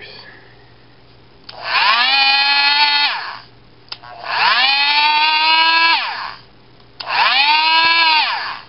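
Dremel Multi-Max oscillating multi-tool with a triangular sanding pad, switched on three times. Each time the motor winds up to a steady hum, runs for about two seconds and winds down, with small clicks between the runs. The tool is running again now that its faulty switch has been repaired.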